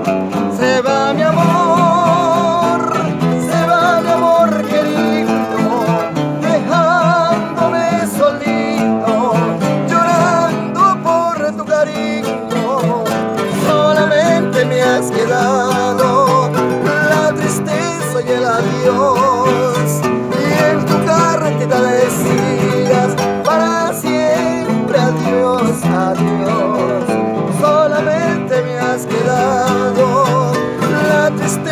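Three acoustic guitars playing together, with strummed chords under a picked lead melody, in an instrumental passage of a slow, sentimental song.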